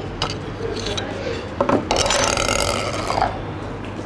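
Hand-handling noise of a spinning reel and fishing line: a few sharp clicks, then a longer rubbing, scraping sound in the middle.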